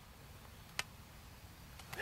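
Quiet outdoor background with a low steady hiss, broken once by a single brief, sharp click a little under a second in.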